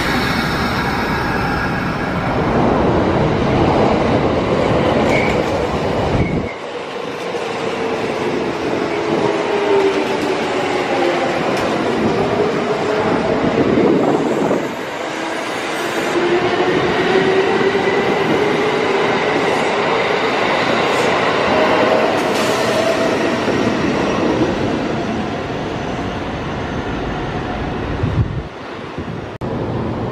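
Kintetsu electric trains moving through a station at close range: wheels running on the rails, with the motor whine gliding down in pitch and then rising again partway through.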